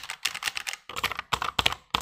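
Fast typing on a Rexus Legionare MX3.2 mechanical keyboard, a dense run of sharp key clicks with a brief pause about halfway through.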